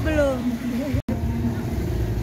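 A steady low rumble runs under people's voices, with a momentary dropout to silence about a second in.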